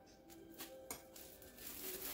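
Faint crinkling of a plastic oven bag being handled, with a few short sharp crinkles, over faint background music.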